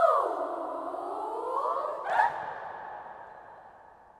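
Children's choir voices sliding down in pitch together and back up, ending on a sharp accented shout-like attack a little past halfway. The sound then dies away in the long reverberation of a large stone church.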